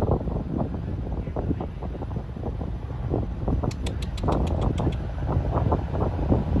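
Wind buffeting the microphone over the low, steady rumble of a boat's diesel engine, with a quick run of about ten faint high ticks near the middle.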